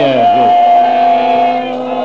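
A harmonium holds one long, steady note over a low sustained drone. The note fades off near the end. The last of a man's spoken words ends about half a second in.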